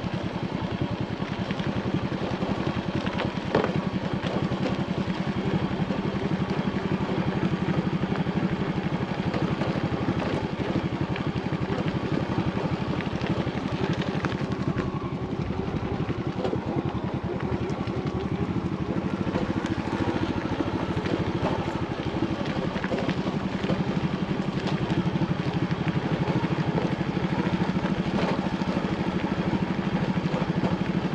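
Motorcycle engine running steadily while the bike is ridden along a rough dirt track, with a sharp knock about three and a half seconds in.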